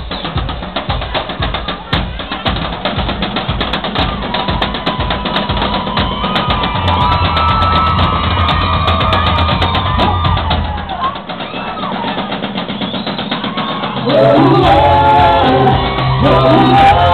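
Loud live band music: a drum kit keeping a fast, busy beat over held bass and melody notes. About fourteen seconds in, loud singing comes in over the band.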